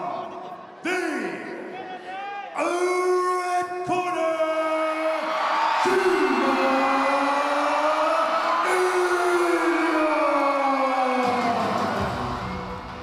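A ring announcer bellowing the winner's name in long drawn-out syllables, with crowd cheering that swells about halfway through.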